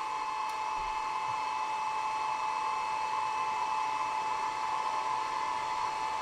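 Steady whirring hum with a high whine from an xTool 1064 nm IR laser module's cooling fan while the laser fires at low power.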